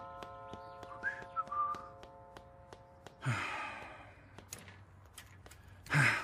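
Light footsteps of a man coming down a staircase, heard under a sustained background music chord that fades out about three seconds in, with a short whistled note about a second in. Just after three seconds there is a brief rush of noise as the front door is opened.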